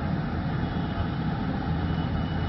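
Steady low rumble of hall background noise picked up by a live public-address microphone, with no distinct events.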